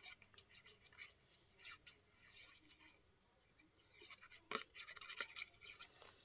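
Faint scratching of a fine-tip glue bottle's nozzle drawn across the back of a paper cutout as glue is spread on it, with a few light taps in the second half.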